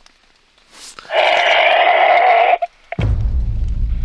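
A loud, harsh cry-like noise about a second and a half long, coming through a phone speaker on a call, which the listener takes for a friend's prank. About three seconds in, a low rumble of phone handling starts.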